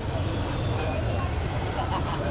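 Street noise: a steady low rumble of traffic under indistinct chatter of voices.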